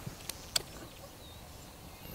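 Small scissors snipping fishing line: two faint clicks close together about half a second in.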